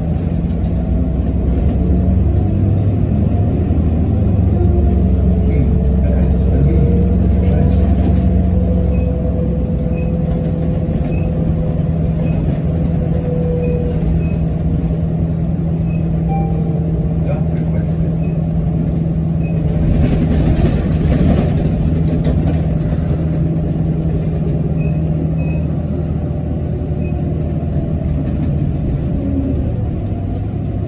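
Articulated city bus heard from inside while under way: steady engine and drivetrain hum, with a higher tone that slowly rises and falls and faint, scattered high ticks or squeaks. A short rush of hiss comes about twenty seconds in.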